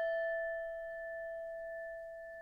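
Singing bowl ringing out after a single strike: one steady low tone with a few fainter higher overtones, slowly fading.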